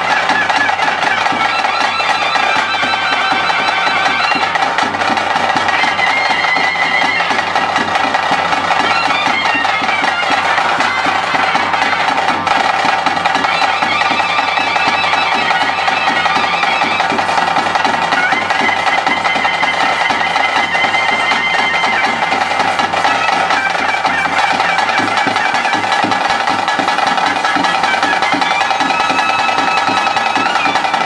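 Traditional bhuta kola ritual music: a loud reed pipe plays a wavering melody over a steady drone, with drums beating a fast, dense rhythm.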